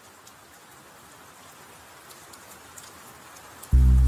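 Rain sound, a steady hiss with scattered drop ticks, slowly growing louder. Near the end loud, bass-heavy music cuts in suddenly with held chords.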